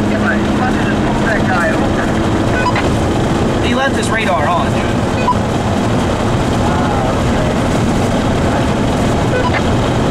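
Steady engine drone and tyre and road noise heard from inside a car's cabin while driving at highway speed.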